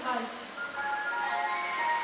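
Ice cream van chime playing its tune: a run of steady held notes stepping from pitch to pitch.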